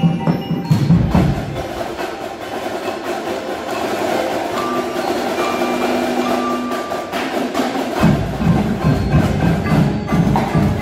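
Scholastic winter percussion ensemble playing: marimbas and other mallet keyboards play a dense run of notes over drum strokes. The low drum hits drop out about a second and a half in and come back loudly about eight seconds in.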